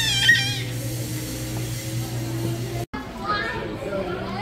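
Children's voices, starting with a high-pitched squeal, over a steady low hum from a coin-operated kiddie car ride. The sound cuts off abruptly about three seconds in and gives way to background voices.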